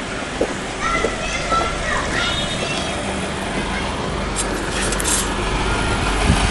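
Outdoor ambience: indistinct distant voices over a steady low background rumble, with a brief high hiss about four and a half seconds in.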